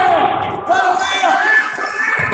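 A crowd of many raised voices yelling at once in a gymnasium during basketball play, overlapping and echoing.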